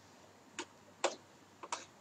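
A few faint, separate clicks of computer keyboard keys, four in all, the loudest about a second in and two close together near the end.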